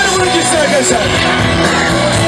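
Loud live pop band music through a concert sound system, with a voice over it in the first second.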